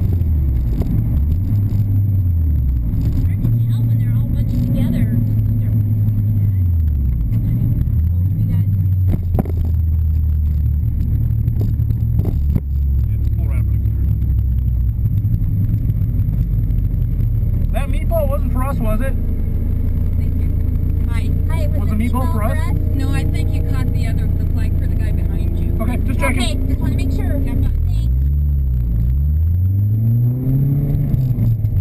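Supercharged four-cylinder engine of a Lotus Elise SC heard from the cockpit. Its revs rise and fall as the car brakes and slows, then settle into a steady low drone at crawling speed, and climb again near the end. Brief voices come over it in the middle.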